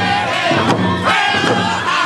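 Group of men singing a First Nations hand drum song in loud, high voices over a steady beat of hide-headed frame drums struck with beaters.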